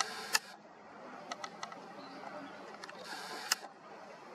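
Camera mechanism and handling noise while zooming in: two brief hissy rustles, each ending in a sharp click, with a few fainter ticks between them.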